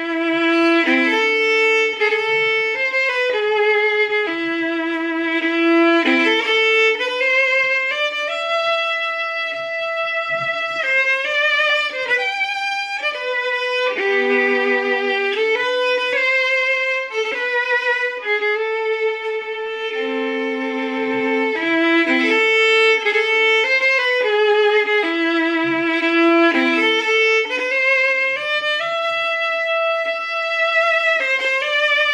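Solo fiddle playing a slow strathspey, a Scottish fiddle tune, with a bowed melody of held and moving notes that starts at once and runs without a break.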